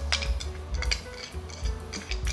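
Quiet background music with light, irregular clicks and clinks of a metal spoon against small ceramic bowls as sauce ingredients are spooned and poured together.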